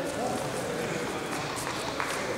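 Indistinct background voices over a steady hum of room noise, with no clear individual words.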